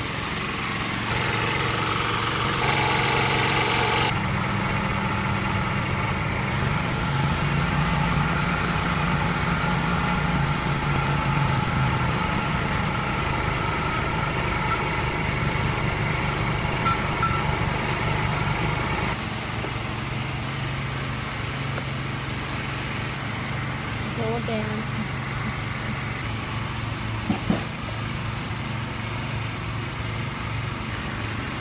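Small petrol engine driving a scuba air compressor, running steadily while it charges dive tanks. About two-thirds of the way through, the sound turns quieter and duller.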